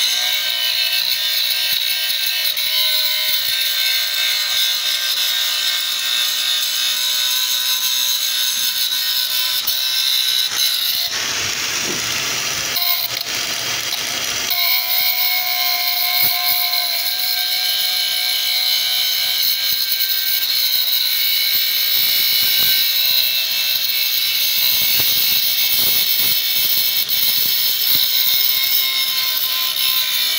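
Electric angle grinder running with a steady high-pitched whine as its disc grinds rust off a steel pipe, with a rougher, noisier stretch about 11 to 14 seconds in.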